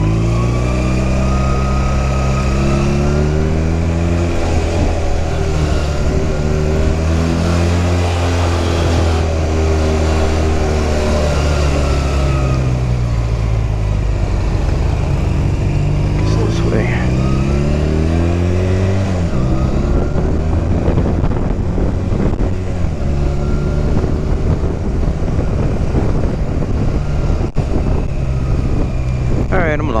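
Honda Rebel 250's parallel-twin engine running in town traffic, its pitch rising and falling several times as the rider accelerates and shifts, then steadier for the last ten seconds or so. Wind noise sounds on the helmet-mounted microphone throughout.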